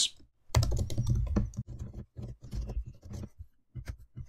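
Typing on a computer keyboard: a quick run of keystrokes, with a brief pause about three and a half seconds in before the typing resumes.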